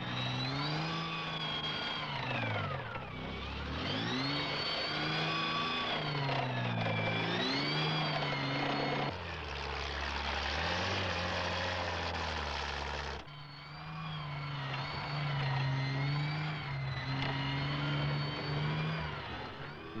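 A CVR(T) Scimitar light tank driven hard over rough ground, its engine note rising and falling again and again as it revs and eases off. For a few seconds in the middle the sound is heard from on board the tank, lower and rougher, before the rising-and-falling engine note returns.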